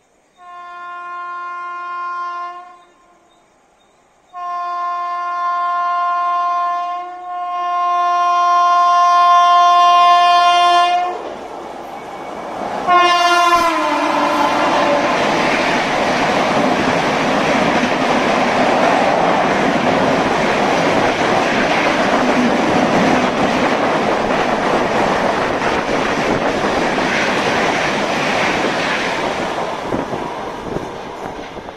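Electric locomotive's horn blowing a short blast, then one long blast as the train approaches, and a last brief blast that drops in pitch as the locomotive passes. It is followed by the steady rushing and clatter of LHB coaches running through at full speed.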